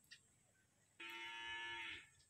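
One short, steady-pitched call from a farm animal, about a second long, beginning suddenly about a second in.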